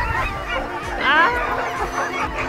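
A team of sled dogs yelping and howling together in overlapping rising and falling cries, with a burst of sharp yelps about a second in: the excited noise of a harnessed team eager to run before the sled sets off.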